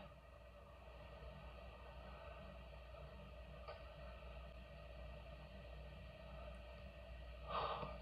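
Near quiet: faint steady background hiss with a low hum, and a single faint click about three and a half seconds in.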